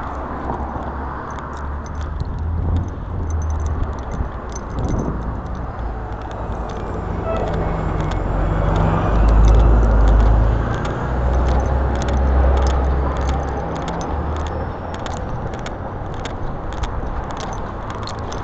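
Light clicking and jangling of gear carried by a person walking, over a steady low rumble of street traffic that swells about halfway through.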